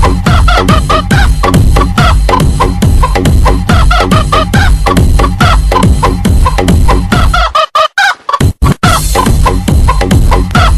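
Electronic DJ remix with a heavy bass beat built around sampled chicken clucks and rooster crows. About seven and a half seconds in the bass drops out for roughly a second, leaving chopped, stuttering clucks, then the beat comes back.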